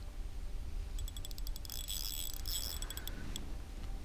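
Rapid metallic clicking from a spinning reel for about two seconds, starting a second in: the drag giving line as the snagged lure is pulled, just before the line breaks.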